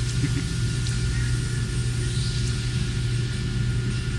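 Steady low electrical or machine hum with a faint hiss, unchanging throughout.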